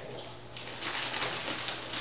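Plastic cereal bag crinkling as it is handled and opened. The crackling starts about half a second in and grows louder.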